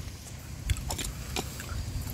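A person chewing food close to the microphone, with a few soft clicks.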